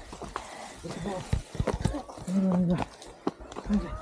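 Footsteps in sandals on a dirt trail, an irregular series of light slaps and clicks, with people's voices.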